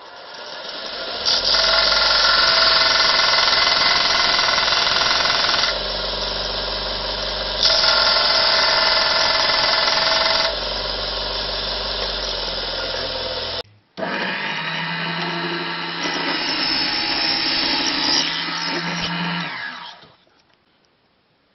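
Stationary belt sander running, turning louder and harsher twice, for a few seconds each, as a small pine frame is pressed against the moving belt. After a brief break, a small table saw runs steadily with a clear hum.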